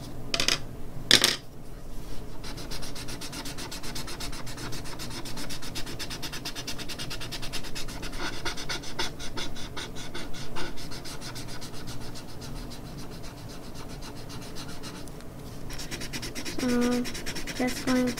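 Large paper blending stump rubbed in quick back-and-forth strokes over pencil graphite on drawing paper, a steady scratchy rubbing as the shading is smoothed. Two brief knocks sound about half a second and a second in.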